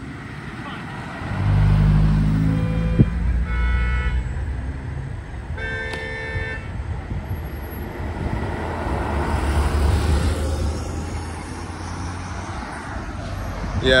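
Street traffic at an intersection: a vehicle's engine passes close by, and a car horn sounds twice, about a second each, around four and six seconds in. Another car passes a few seconds later.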